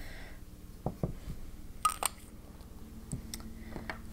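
Light clicks and taps of fountain pens and pen caps being handled and set down, with a sharper double click about two seconds in.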